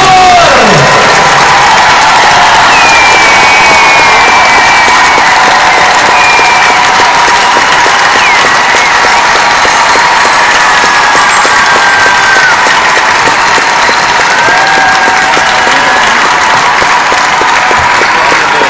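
Large arena crowd applauding and cheering loudly and steadily, with a few short high whistles rising above the clapping now and then.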